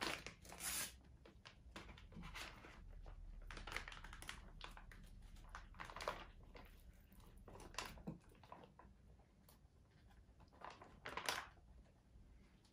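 Foil ration pouch crinkling as it is handled and opened, then rice and meat tipped out onto a plate: faint, intermittent rustling with a few sharper crackles.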